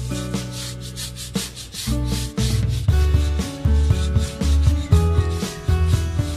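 A shoe brush scrubbing back and forth over a rubber tyre sidewall coated with shoe polish, in quick scratchy strokes. Background music with a bass beat plays under it, the beat growing steadier about halfway through.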